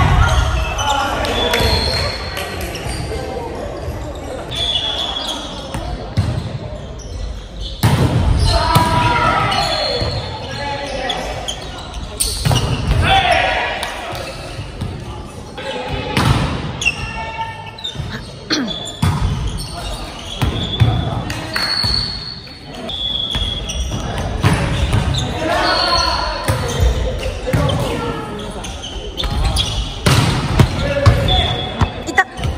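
Indoor volleyball play: the ball being struck and hitting the floor again and again, with players' calls and shouts in the gym.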